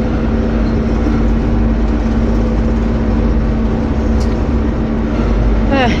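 Bizon combine harvester's diesel engine running steadily while the machine drives along a road, heard from the driver's seat, with a constant hum over a low rumble.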